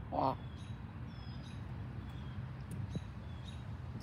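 A bird gives one short call right at the start, the last of three in quick succession. Faint high chirps of small birds follow over a steady low background hum.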